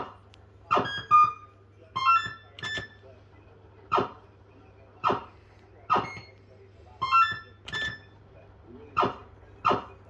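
Bell-Fruit Super Play fruit machine playing its electronic sound effects during a game: short pitched beeps and chimes, roughly one a second and sometimes in quick pairs, over a steady low hum from the machine.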